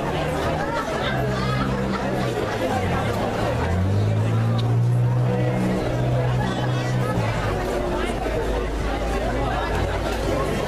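A wind band with saxophones and brass playing, its low bass notes held for a second or more at a time, with people talking close by over the music.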